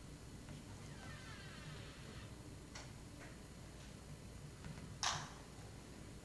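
Quiet room tone with faint handling sounds at a pulpit microphone: a soft rustle, two light clicks, then a short, louder swish about five seconds in.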